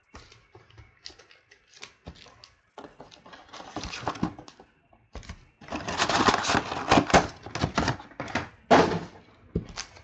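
A cardboard trading-card box and foil card packs being handled on a tabletop. Scattered light taps and rustles give way to a denser stretch of rustling in the second half, then a single sharper knock.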